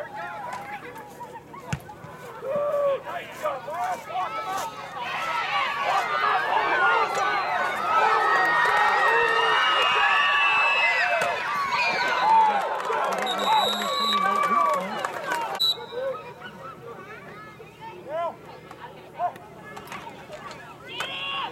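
Football crowd and sideline players yelling and cheering during a running play, swelling about five seconds in and dropping off suddenly near fifteen seconds. A referee's whistle blows near the end of the cheering.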